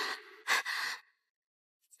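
A woman's short, breathy gasp about half a second in, right after the drawn-out end of her last spoken word, then dead silence.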